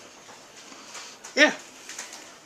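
Mostly quiet room tone, with one short "yeah" from a man about one and a half seconds in, spoken with his mouth full.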